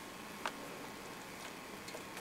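Quiet room tone: a faint steady hiss with a single small click about half a second in.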